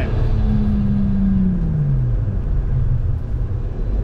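Toyota Supra's engine heard from inside the cabin, running over a steady low rumble; its note holds, then falls in pitch about a second and a half in as the revs drop.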